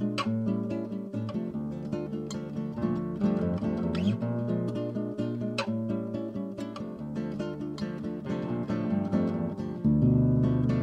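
Background music on acoustic guitar: plucked and strummed notes in a steady flow.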